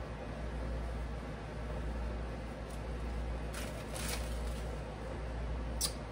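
Steady low room hum, with a few faint brief rustles in the middle as crushed Ritz cracker crumbs are sprinkled over haddock fillets in a baking dish, and a short click just before the end.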